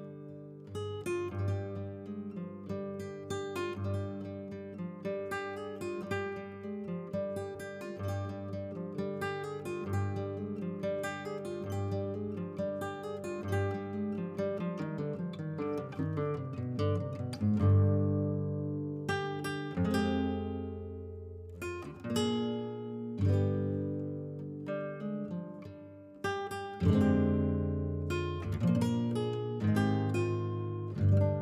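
Background acoustic guitar music: picked notes that run down in pitch, then strummed chords from about 18 seconds in.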